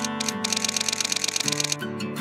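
Background music with a rapid, typewriter-like run of clicks, an animated-graphic sound effect, from about half a second in until shortly before the end.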